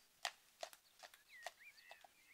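Faint clip-clop of a horse's hooves on a tarmac lane at a walk, about two or three hoofbeats a second. Birds chirp from about halfway through.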